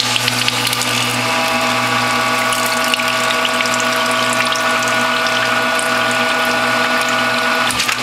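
Norwalk juicer's electric hydraulic press running under load as it squeezes a cloth-wrapped orange: a steady motor hum with a whine that comes in about a second in. It cuts off near the end.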